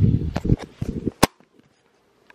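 Hand grabbing and moving the camera: a run of bumps, rubbing and knocks, then a sharp click a little over a second in, after which the sound cuts out.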